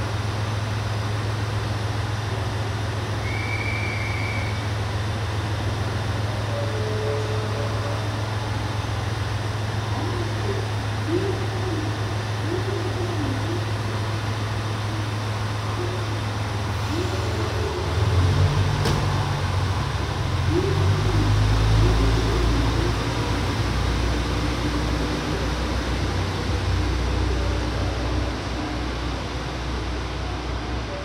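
HOT7000-series diesel railcar idling with a steady low engine hum, then about two-thirds of the way through its diesel engines throttle up as the train pulls away from the platform, the rumble growing louder and deeper before easing off as it moves away.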